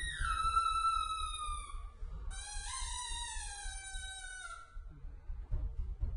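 Cello playing two long, high bowed notes that glide slowly downward in pitch, the second starting about two seconds in and stopping near five seconds. Low thumps follow near the end.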